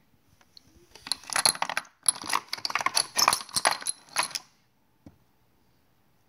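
Loose brass rifle cartridges clinking and rattling against each other as they are handled, a dense run of metallic clicks lasting about three seconds with a short break in the middle.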